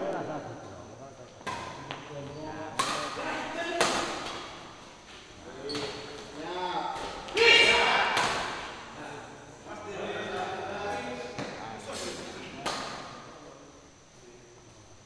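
Badminton rackets striking a shuttlecock in a doubles rally: sharp smacks a second or more apart, each with a short echo of the hall. Players' voices run under the hits, with a loud shout about halfway through.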